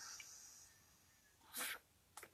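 Near silence, broken about one and a half seconds in by one short breathy burst from a man, like a quick sniff or a stifled laugh through the nose.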